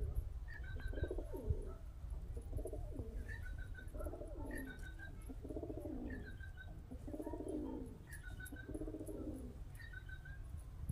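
Domestic pigeons cooing, one low coo after another about once a second. A short, higher two-note chirp from another bird repeats about every second and a half.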